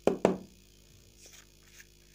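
Two sharp knocks about a quarter second apart as plastic bottle caps are set down on a table, followed by a few faint light clicks of the caps being handled.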